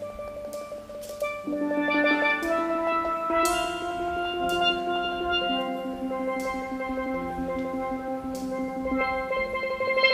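Instrumental music led by steelpan, playing sustained, rolled notes, with cymbal crashes every second or two. It swells louder about a second and a half in.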